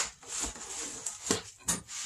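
Plastic wrapping crinkling, with a few short, light knocks, as a camshaft is handled and lifted out of its packing.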